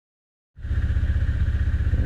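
Silence at first, then about half a second in a motorcycle engine starts to be heard, idling with a steady, even low pulse.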